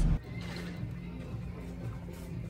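Background music laid over the footage, at a steady moderate level after a voice cuts off at the very start.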